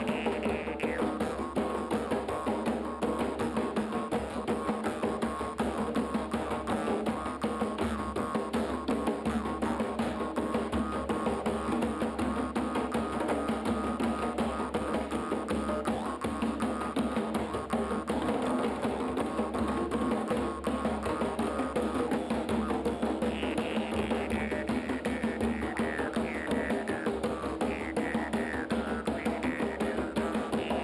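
Three djembes played by hand in a fast, dense ensemble rhythm, with a jaw harp twanging over them. The jaw harp's high overtones glide in pitch, most plainly near the start and over the last several seconds.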